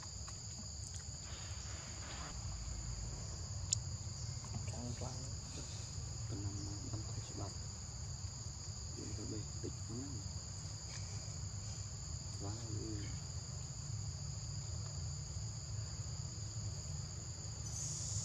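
Forest insects droning in a steady, high-pitched chorus over a low rumble.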